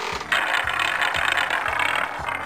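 Spinning prize-wheel sound effect: a steady run of clicking as the wheel turns, starting about a third of a second in.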